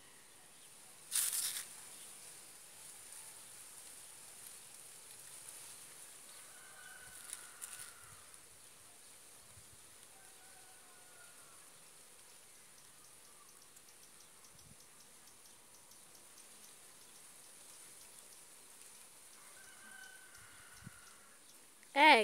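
Quiet outdoor ambience with a steady high hiss, a short burst of noise about a second in, and a few faint, drawn-out bird calls.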